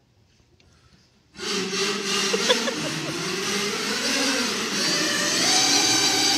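A loud burst of many voices at once, a mass shout or roar from a choir, begins suddenly about a second and a half in and holds for about five seconds. Before it, near silence.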